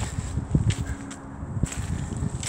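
Footsteps through dry fallen leaves and twigs: a few irregular steps with leaf rustle.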